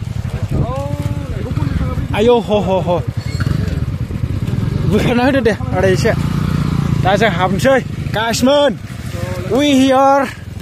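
People talking, with a motorcycle engine running steadily underneath the voices.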